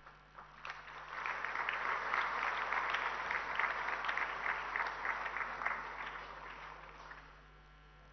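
Audience applauding: a few scattered claps, then the clapping swells about a second in and dies away near the end.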